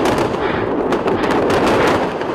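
Loud, continuous rapid gunfire: a dense crackle of shots with no break.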